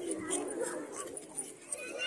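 Children's voices chattering as a group of schoolchildren walks in a line.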